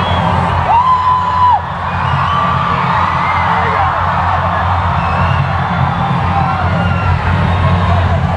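Concert crowd cheering and screaming over low, steady electronic intro music, with many short high cries and one longer held scream about a second in.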